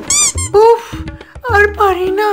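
A short, high-pitched squeak just after the start, then a person's voice over background music.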